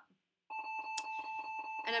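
A steady high electronic beep, one unbroken tone held for about two seconds, starting about half a second in. A single sharp click sounds about a second in.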